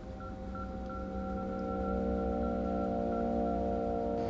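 Background music: a sustained chord of several held tones that slowly swells in loudness.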